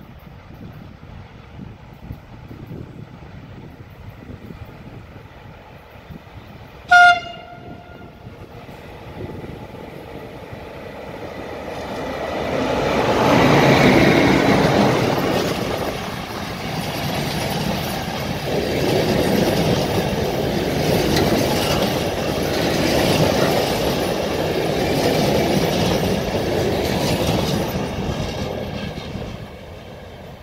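A short, loud train horn blast about a quarter of the way in, then a passenger train of electric locomotive EA1 464 and coaches passes close by: a swelling rumble and clatter of wheels over the rails that holds for some fifteen seconds and eases off near the end.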